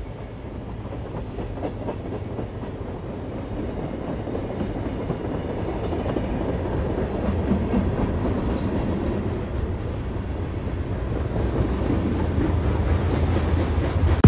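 A low, dense rumbling noise that fades in and grows gradually louder, with a rattling, clattering texture.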